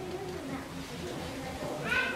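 Quiet room pause with faint voices, then a short, high, falling vocal sound near the end, such as a person beginning to speak or making an exclamation.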